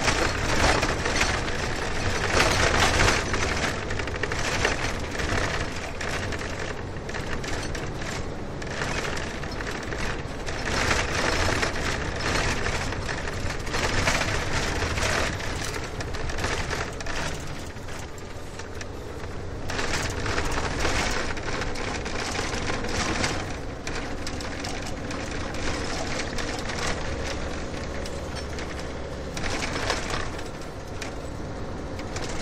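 Noise inside a moving car, with a dense, irregular rattling and clicking over a steady road rumble that swells and eases every few seconds.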